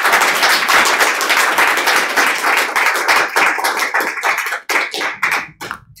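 Audience applauding, thinning out to a few scattered claps near the end.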